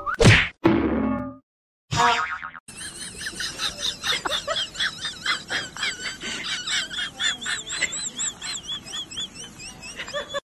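Cartoon 'boing' sound effects: a quick rising twang right at the start, then from about three seconds in a long string of rapid, wobbling high-pitched warbles.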